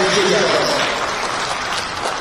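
Audience applauding, a steady wash of clapping. The end of a man's amplified speech trails off in the first half second.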